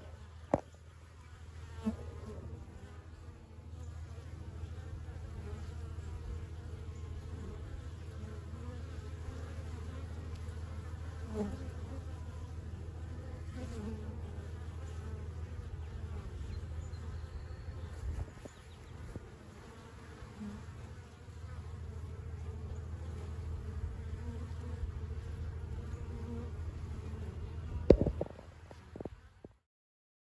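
Honeybees of a newly hived swarm buzzing steadily around the entrance of a nuc box as they settle in, with a few sharp knocks, the loudest near the end.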